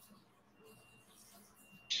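Quiet room tone with a faint, thin high tone coming and going about once a second, then a man starts talking right at the end.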